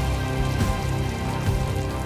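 Heavy falling water, a dense patter like rain, under film score music with held notes and a strong low bass.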